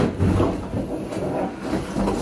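A fist punching a large cardboard box, one sharp hit at the very start that tears a hole in the cardboard, followed by a couple of seconds of scraping and rustling as the box is knocked about.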